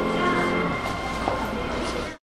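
Final chord of a four-hands piano duet on a grand piano, held and then released under a second in, leaving a steady background rumble.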